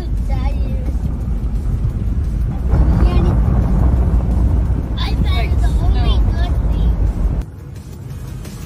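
Steady low road rumble inside a moving car's cabin, with a child's laughter and brief voices over it. The rumble cuts off suddenly shortly before the end.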